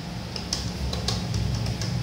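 ATM keypad being pressed while entering a PIN: about six short key beeps in quick succession, over a steady low hum.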